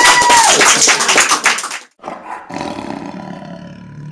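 Audience clapping and whooping after a song, cut off abruptly about two seconds in. After a brief gap comes a quieter, rough, sustained sound with a low rumble.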